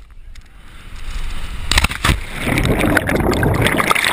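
Wind rushing over a body-worn camera's microphone during a free fall of about 40–50 feet, growing louder, then a hard splash into lake water about two seconds in. After the entry, churning, bubbling water is heard with the camera under the surface.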